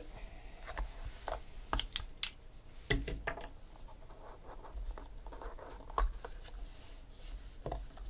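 Box cutter scratching through the seal band on a small cardboard trading-card box, followed by scrapes and scattered sharp clicks as the box is opened and the card inside is handled.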